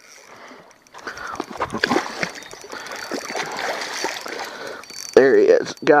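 Hooked carp thrashing and splashing in shallow water at the bank edge as it is brought in to be beached: irregular splashes from about a second in, lasting some four seconds.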